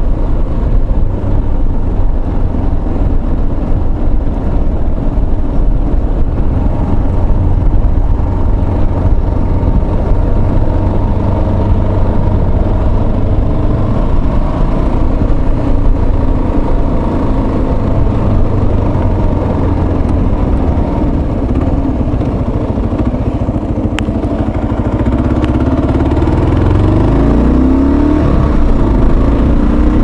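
Motorcycle engine running at road speed, heard from a helmet-mounted microphone under heavy, steady wind rumble. Near the end the engine note rises as the bike accelerates.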